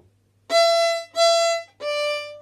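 Violin played with the bow: after a short pause, two separate notes at the same high pitch, then a slightly lower note starts just before the end.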